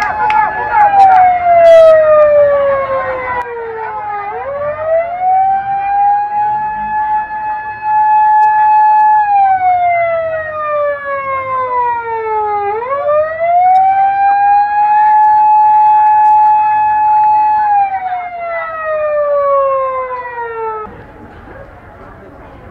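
Ambulance siren wailing in a slow cycle: the pitch holds high for a few seconds, slides down over about three seconds, then sweeps quickly back up. It falls three times and cuts off about a second before the end.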